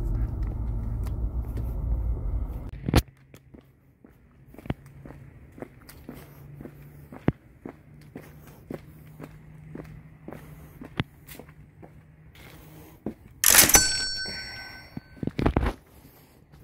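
Car cabin rumble for the first few seconds, then footsteps on a concrete walkway at a steady walking pace, about one and a half steps a second, over a faint low hum. Near the end a sudden loud burst with ringing high tones.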